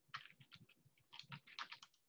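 Faint computer keyboard keystrokes: a quick run of about a dozen key taps, typing into the Windows search box to open Paint.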